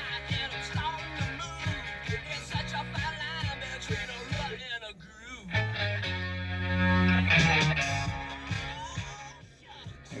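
FM radio playing music through the 2023 Subaru Outback's car stereo speakers, turned down near the end.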